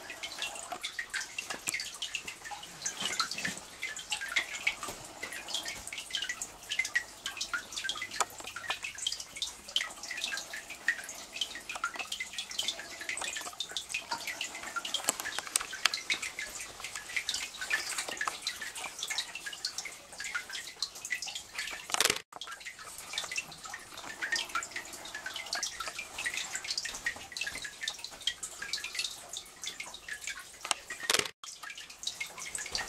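Meltwater dripping from lake ice into shallow water: a continuous stream of many small overlapping drips.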